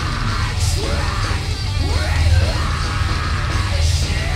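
Heavy metal band playing live, with electric guitars, bass and drums, and a singer yelling into the microphone in vocal lines that slide upward in pitch.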